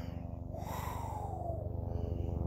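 Helicopter drone with a steady, rapid rotor beat.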